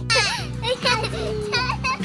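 Background music with a steady bass line under high children's voices calling out and laughing.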